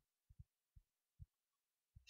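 Near silence with four or five faint, short low thuds spread across the pause.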